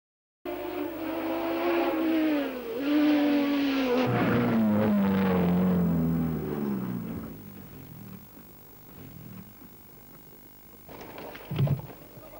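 Osella BMW barchetta race car's engine running hard. Its note falls steadily in pitch as the car slows, with a brief dip and recovery about two and a half seconds in. The engine then fades, and near the end a burst of noise and a heavy thump come as the car leaves the road into the dirt.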